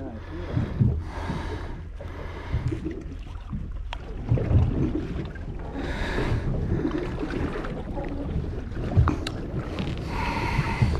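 Wind rumbling on the microphone over water slopping against a boat hull, with a couple of sharp clicks from handling, about four and nine seconds in.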